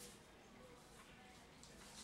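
Near silence: faint room tone with a low, steady hum and hiss.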